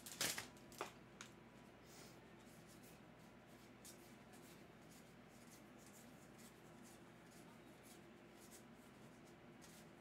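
Faint handling of a stack of trading cards, with soft card-on-card slides and flicks. A brief, louder rustle comes just after the start.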